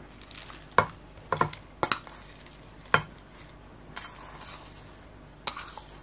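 Kitchen utensils and dishes clinking sharply against a glass measuring jug several times over the first three seconds, with another clink near the end. About four seconds in there is a short rustling swish as chopped spinach and ham are tipped into the jug of beaten egg.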